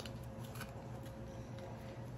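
Faint handling sounds: a few small clicks and rustles as a metal mason jar lid and its overhanging paper striker strips are worked by hand, the lid not going back on. A low steady hum runs underneath.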